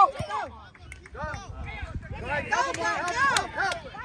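Shouting voices of sideline spectators, several at once about halfway through, over a low rumble of wind on the microphone.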